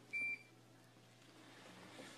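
A single short, high-pitched electronic beep lasting about a quarter second.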